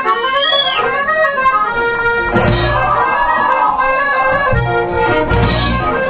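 Live punk band: a piano accordion plays a melody of held notes alone, then the rest of the band, with drums and electric guitar, comes in loudly about two seconds in.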